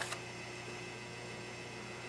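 Steady low electrical hum with a faint even hiss of room tone. A brief faint crinkle of paper or plastic packaging comes right at the start.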